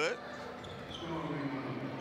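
Basketball game play in a gym: the ball and sneakers on the hardwood court over a steady background of the hall, with faint distant voices.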